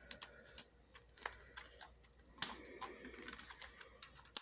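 Faint scattered clicks and soft rustles of a small stack of sleeved trading cards bound with a rubber band being handled.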